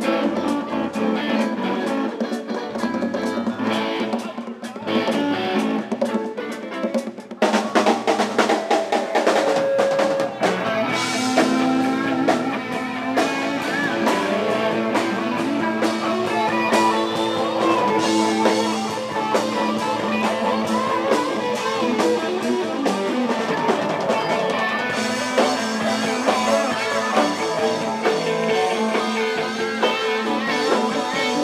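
A live band playing: electric guitar over drums and a hand-played conga. About seven seconds in, the playing turns suddenly fuller and louder, with steady drum hits.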